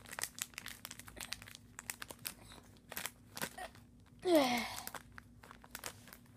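Plastic binder pages and card sleeves crinkling and clicking in irregular short snaps as the binder is handled. About four seconds in, a short, louder sound slides down in pitch.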